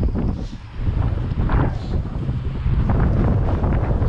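Wind buffeting the handheld camera's microphone: a loud, uneven low rumble that dips briefly about half a second in.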